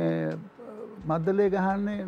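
A man singing a tune without words on drawn-out 'eh' syllables, unaccompanied: one long held note fades about half a second in, and another begins about a second in.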